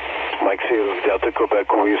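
A distant amateur station's voice received in upper sideband on a President Washington 10 m transceiver: thin, narrow-band speech over a steady hiss.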